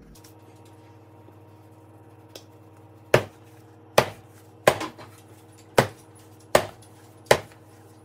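Neapolitan pizza dough being slapped and stretched by hand on a countertop: about six sharp slaps, a little under a second apart, starting about three seconds in.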